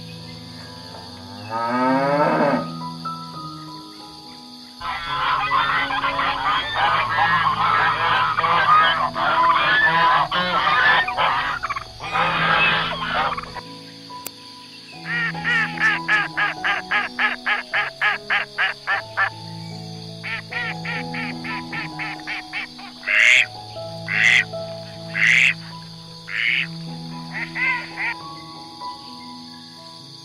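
Farm animal calls over calm background music: a cow moos briefly near the start, then geese honk and cackle for several seconds. Ducks then quack in quick runs of about five calls a second, ending with a few loud single quacks.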